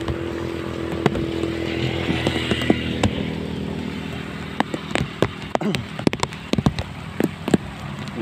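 A small engine running steadily, fading away over the first three or four seconds, followed by scattered sharp taps and clicks.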